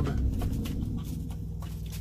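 Faint scattered clicks and rustles, like small objects being handled, over a steady low hum.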